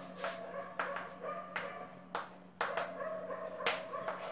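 Chalk on a blackboard as a word is written: a series of sharp taps and scrapes at irregular intervals, over a steady low hum.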